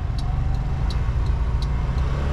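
A car's turn-signal indicator ticking steadily, about three ticks in two seconds, over the low rumble of the engine and road heard inside the cabin.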